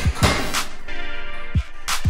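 Background music with a beat: deep kick drums that drop in pitch, sharp snare-like hits and sustained notes.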